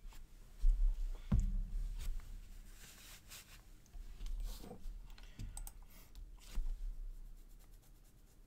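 Computer keyboard typing in scattered, irregular keystrokes, with a couple of louder thumps about a second in.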